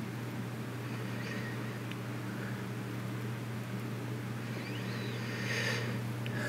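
Steady low electrical hum with faint overtones, with a soft breath through the nose near the end.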